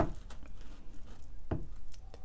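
A deck of cards being handled while a card is drawn: two sharp taps, one at the start and one about a second and a half in, with light card rustling between.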